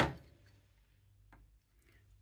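Near silence with room tone and one faint, short click about halfway through, as a plastic model part is handled.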